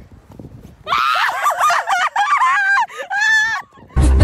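A young woman shrieking with excitement, several high-pitched screams in quick succession starting about a second in and stopping just before the end.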